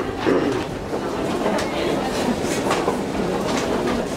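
Escalator running steadily, a continuous mechanical rumble with many small clicks and rattles from the moving steps and handrail.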